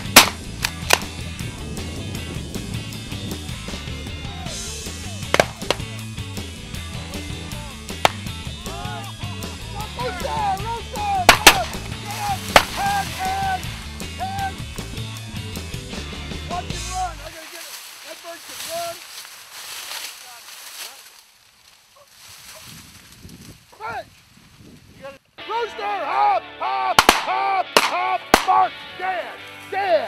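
Shotgun shots, five or six spread over the first half, loudest at the very start, over background rock music with a steady beat. About halfway through the music stops, leaving repeated bird calls and three more quick shotgun shots near the end.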